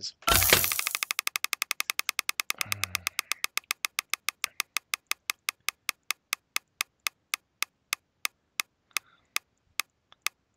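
Mystery-box website's reel-spin sound effect: a loud burst as the spin starts, then rapid ticks that slow steadily from about ten a second to about two a second as the item reels wind down.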